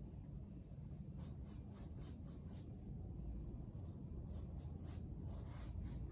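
Big paintbrush stroking black paint onto a stretched canvas: a run of short, scratchy swishes starting about a second in and coming closer together toward the end, over a steady low room hum.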